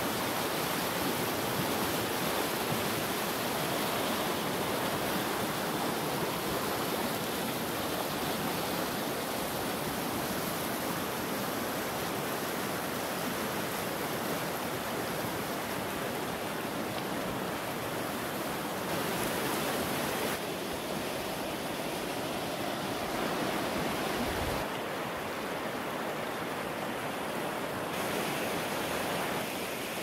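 Silty glacial meltwater river rushing fast over a gravel bed, a steady, even rush of water.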